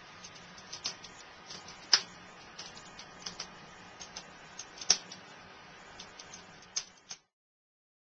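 Irregular crackles and sharp pops from a burning wood fire in an open fireplace, with two louder pops about two seconds and five seconds in. The sound stops abruptly near the end.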